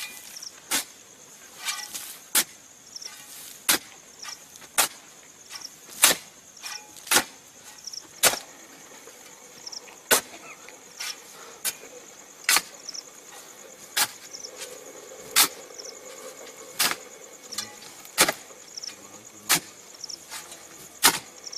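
Digging tools striking into the earth of a grave at a steady pace, about fifteen sharp strokes, one every second or so. Crickets chirp steadily behind them.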